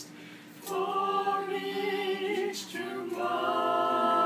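Small group of women's and men's voices singing a Christian worship song a cappella, holding long notes. A short breath pause opens it, the singing comes in about half a second later, and a new phrase begins about three seconds in.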